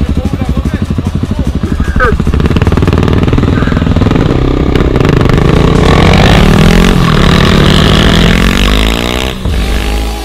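Single-cylinder supermoto motorcycle engine of a Yamaha WR250X with an aftermarket LeoVince exhaust, heard on board. It beats steadily at low revs at first, then pulls away louder with its note rising through the revs, easing off briefly near the end.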